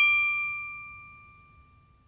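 A single bright ding, a struck bell-like chime that rings out and fades away over about two seconds, played as a sound effect for an animated logo.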